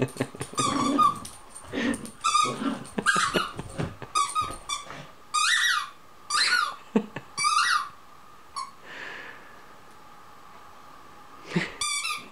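Air Kong Squeaker tennis ball squeaking over and over as a small dog squeezes it in its jaws. There is a string of short squeaks, sometimes two in quick succession, then a pause of a few seconds, and the squeaking starts again near the end.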